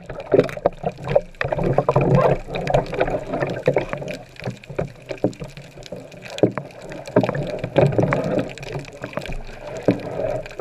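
Underwater sound heard through a submerged camera: a muffled, continuous water wash with many scattered sharp clicks and crackles.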